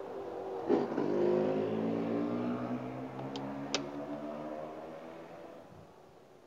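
A motor vehicle's engine running at a steady pitch, growing louder about a second in and then fading away over the following seconds, as a vehicle drives past and off. A click sounds just before it peaks, and a brief high squeak comes midway.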